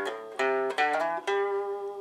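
Guitar playing a short blues phrase of single plucked notes, about five in quick succession, the last one held and left ringing.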